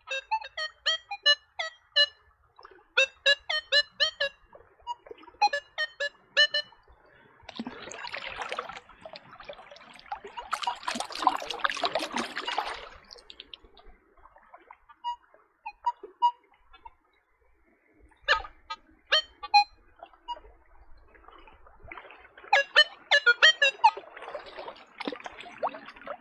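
Nokta Legend metal detector's speaker sounding its target tone in short runs of quick beeps, about four a second, signalling metal in the creek bed. In the middle comes a stretch of water splashing and sloshing.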